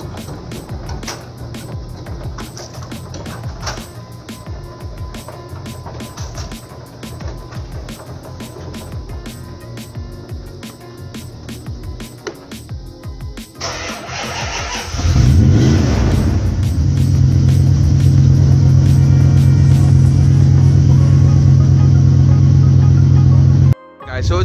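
Background music with a beat for the first half. About fourteen seconds in, a Dodge Ram pickup's engine cranks and starts, then settles into a loud, steady idle that cuts off suddenly just before the end.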